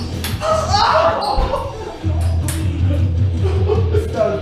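Music plays over a table tennis rally. A few sharp clicks come from the Nittaku 44 mm three-star ball striking the paddles and bouncing on the table.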